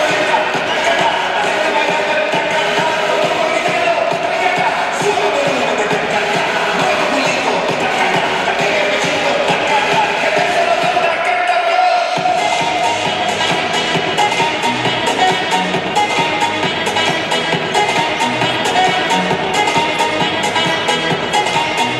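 Dance music for a cheerleading routine, playing loud and steady; the bass drops out briefly about halfway through, then comes back in.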